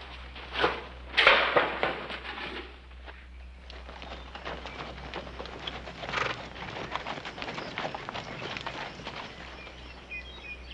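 Horse hooves moving through dry brush and scrub, a continuous run of crunching, rustling steps. A louder burst of noise comes about a second in.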